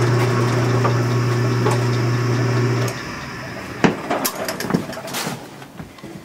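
Electric drive of an early-1950s Logan 10x24 metal lathe running with a steady hum, its gears quiet; the hum stops abruptly about three seconds in. A few sharp clicks and knocks follow.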